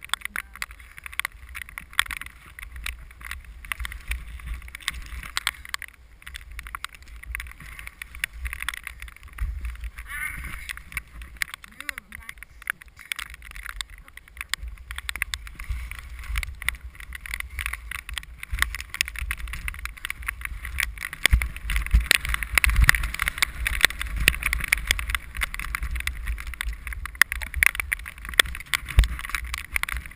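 Skis running over snow with a continuous scraping hiss and many small clicks, over a low rumble of wind buffeting the helmet- or body-mounted camera's microphone. The hiss and rumble grow louder about two-thirds of the way through as the skier picks up the pace.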